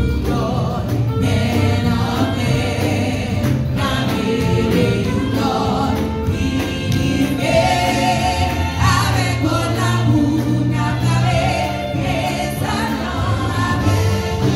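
A small group of women singing gospel together into microphones, amplified, over steady keyboard accompaniment. Their sung lines rise and fall without a break.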